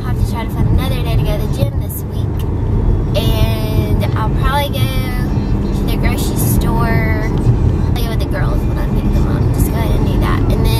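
Steady low road and engine rumble inside the cabin of a moving car.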